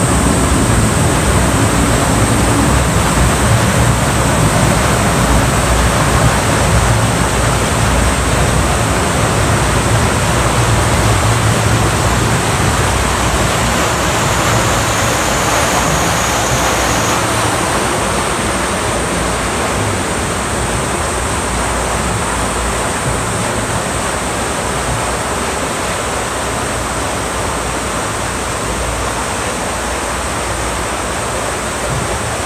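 Water rushing steadily through an amusement-park boat ride's channel, a loud even noise that eases slightly toward the end.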